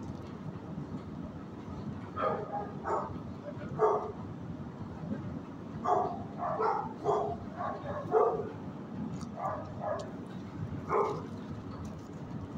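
Dogs barking in a shelter kennel block: scattered single barks, then a quick run of barks from about six to eight and a half seconds in, over a steady low background noise.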